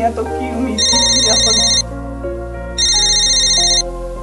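Telephone ringing: two electronic trilling rings, each about a second long with a second's pause between, over background music.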